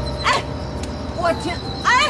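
A dog barking, three short yapping barks over a faint steady background tone.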